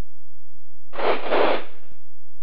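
A brief hiss of static over the aircraft radio, lasting just under a second, in two close swells about halfway through.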